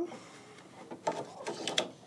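Plastic embroidery hoop being slid onto the embroidery unit carriage of a Janome Continental M17 sewing and embroidery machine, with a few quick clicks and rattles in the second half as it clicks into place.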